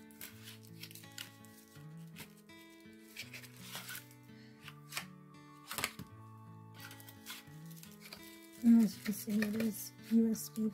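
Soft background music of held low notes that change every second or so, under scattered sharp clicks and rustles of cardboard and plastic packaging being handled. A voice comes in briefly near the end.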